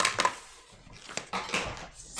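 A coloured pencil dropped and clattering on a wooden tabletop: a quick cluster of light knocks at the start, then a few scattered clicks.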